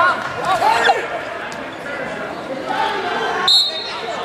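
Spectators shouting across a gym, over thuds of wrestlers on the mat. Near the end comes a short, shrill referee's whistle blast signalling the fall (pin).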